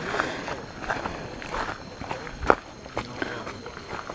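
Footsteps of several people walking on a dirt and leaf-litter forest trail, irregular steps with one sharper step about two and a half seconds in.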